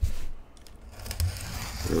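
Gloved hands handling a trading-card box and its wrapper: a thump right at the start, then rustling and crinkling that builds over the second second.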